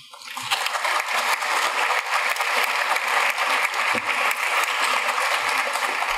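Audience applauding: steady clapping that swells up within the first half second and starts to fade near the end.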